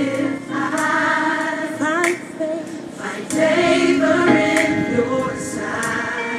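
Gospel choir singing a slow song with long held notes.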